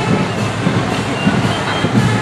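Heavy vehicle engines running at low speed, an uneven low rumble with road noise, from fire apparatus rolling slowly past.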